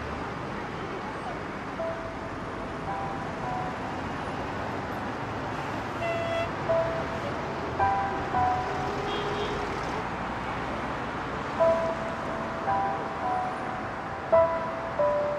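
Steady city road traffic noise from passing cars, with a slow melody of single held notes from the background score entering about three seconds in.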